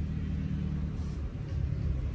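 A low, steady engine rumble.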